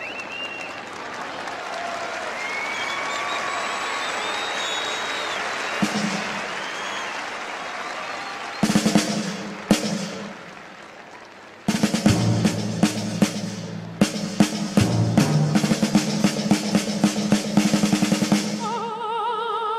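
Crowd noise with scattered whistling, then a drum introduction. Snare drum rolls with low drum strokes come in about halfway through, stop for a couple of seconds, and resume as a steady rolling pattern.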